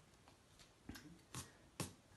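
Near silence, then three short light taps or clicks, a little under half a second apart, in the second half.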